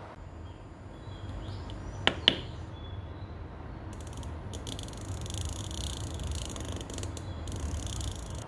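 Two quick clicks from an Osram DALI wall dimmer's push-knob about two seconds in. Then, as the knob is worked, a faint high-pitched buzz with rapid ticking for a few seconds, all over a low steady hum.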